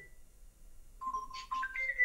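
A short electronic ringtone-like melody of held beeping notes stepping upward, a low note followed by two higher ones. It sounds once about a second in, repeating the same figure heard just before.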